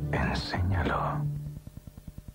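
A whispered voice over music with a sustained low note. About a second and a half in, this gives way to a faint, fast, even ticking, about nine ticks a second.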